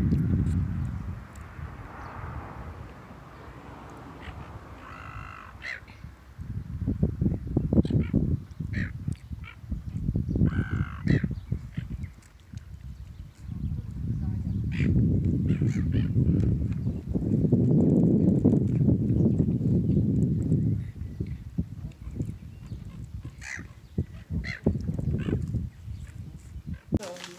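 Wind buffeting the microphone in gusts, with a gull calling twice, about five seconds in and again around ten seconds, among a few short chirps.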